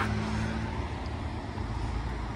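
Car engine idling, heard from inside the cabin as a steady low hum, with a faint tone that fades out about a second in.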